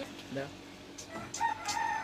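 A rooster crowing: one long held call that starts about a second in.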